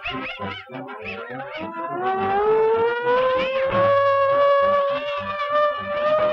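Early sound-cartoon soundtrack: over busy orchestral music, a long siren-like tone slides upward in pitch for about three seconds, then holds steady to the end.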